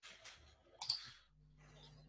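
Faint clicking, the sharpest click a little under a second in, followed by a low steady hum.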